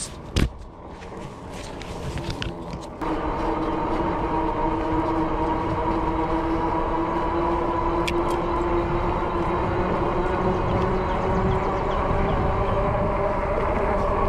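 Fat-tire e-bike riding at speed on pavement: a knock just after the start, then from about three seconds in a steady hum of several even tones from the 26x4 inch tires and drive, over a low rumble of wind on the microphone.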